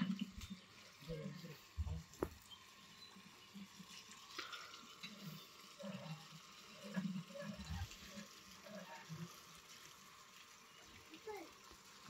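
Faint, distant voices in short snatches, with a little water splashing.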